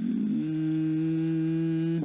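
A man's voice holding one long, steady vowel, a drawn-out hesitation sound in the narration.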